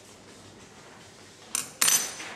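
Glassware clinking on a hard bench: two quick sharp knocks near the end, the second louder and briefly ringing high.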